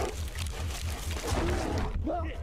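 A bear right up at the camera, making rough, noisy breathing and growling sounds, with a faint low regular beat underneath.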